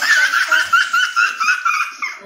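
High-pitched giggling laughter, close and loud, in quick rhythmic squeals of about six a second that start suddenly and break off near the end.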